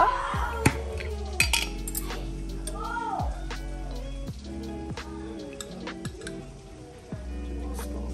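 A metal spoon clinking against a glass salsa jar and a ceramic bowl while salsa is scooped out, a handful of sharp clinks over background music.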